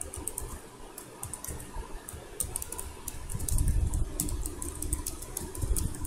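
Typing on a computer keyboard: irregular quick runs of key clicks. Under them is a low rumble that swells about three and a half seconds in.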